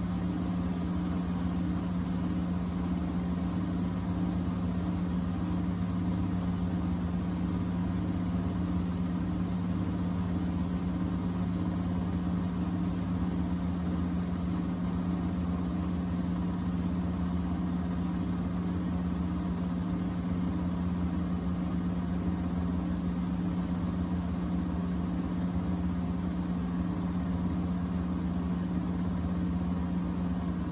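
Miele W4449 front-loading washing machine running a Hygiene 60°C wash: a steady low hum with a faint pulsing above it, with no pauses or changes.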